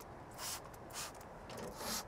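Trigger spray bottle spritzing liquid onto a car wheel: three short, quiet sprays.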